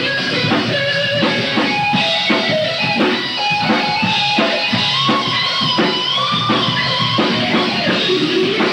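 A rock band playing live: distorted electric guitars and bass over a drum kit keeping a steady beat, in an instrumental stretch of the song.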